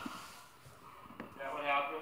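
Short, unintelligible voice-like sound from a smartphone's speaker about one and a half seconds in, after a quiet stretch with a faint click.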